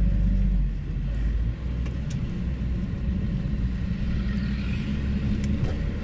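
Steady low road and engine rumble of a moving taxi, heard from inside the cabin. It is loudest for the first second or so, then settles a little lower.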